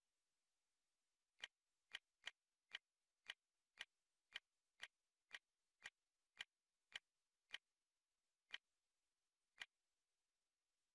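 Menu navigation clicks from a network streaming media player's on-screen interface: about fifteen short, sharp clicks, roughly two a second, one for each step as the selection moves down a folder list, starting about a second and a half in.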